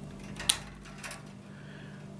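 Hand wire cutters snipping through a fluorescent ballast's yellow lead wires. There is one sharp snip about half a second in and a fainter click about a second in.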